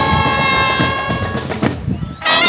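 Marching band brass section holding a loud sustained chord over drum strokes. The chord fades about a second and a half in, leaving the drums before the brass comes back in.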